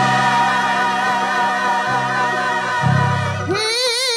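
Gospel choir singing, holding long, steady chords over sustained low notes. Near the end a woman's solo voice comes in, singing with wide vibrato.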